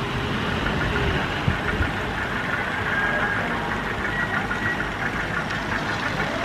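An engine running steadily, a constant rumbling noise.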